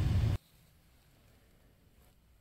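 Car engine idling, heard from inside the cabin as a steady low rumble that cuts off abruptly about a third of a second in, leaving faint, near-quiet room tone.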